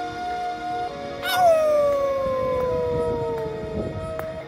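A long howl-like cry that starts with a wobble about a second in, then slides slowly down in pitch for about two and a half seconds, over soft sustained music chords.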